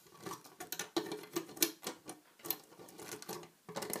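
Irregular plastic clicks and taps from a Rainbow Loom's clear plastic peg board being shifted and pushed straight on a glass tabletop.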